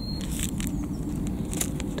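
Steady low background rumble, with a few faint light ticks and rustles as tiny seeds are tipped from a small packet into a palm.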